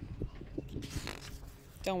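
A page of a picture book being turned by hand: a few light paper clicks, then a short paper rustle about a second in. A woman's voice starts speaking near the end.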